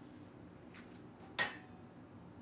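A steel-rimmed glass pot lid clanks once, sharply, with a short ring as it is picked up and handled over the stove, after a fainter click just before.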